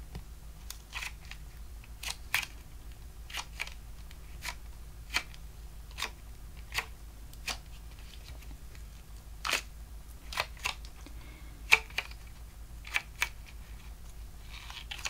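Flour-filled rubber balloon squeeze toy being squeezed and rolled between the fingers, giving irregular sharp little clicks and crackles from the rubber and fingertips, one or two a second, with one louder snap near the end.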